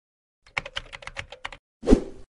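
Rapid typing on a keyboard, about eight quick clicks in a row, followed near the end by a single louder thump, used as the sound effect for a logo appearing.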